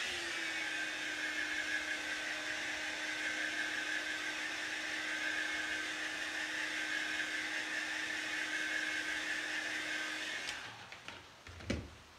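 Handheld craft heat gun blowing steadily with a faint hum, drying chalk paste on a silkscreen transfer. It switches off about ten and a half seconds in, and a single knock follows near the end.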